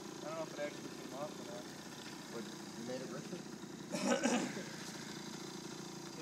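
Small motor scooter engine idling evenly, running fine after having bogged down. A brief louder burst comes about four seconds in.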